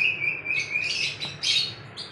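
Birds chirping, about three sharp high chirps a second over a thin, steady whistling note.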